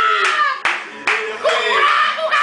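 Hand claps, with two sharp ones about halfway through, amid loud wordless shouting and singing by men's voices.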